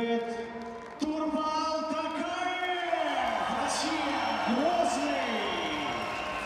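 A ring announcer's voice over the arena PA, calling out the winner of a knockout with long, stretched-out syllables, with crowd noise underneath.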